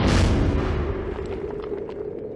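Cinematic boom sound effect of a logo intro: a loud whooshing hit right at the start that fades into a low, steady drone.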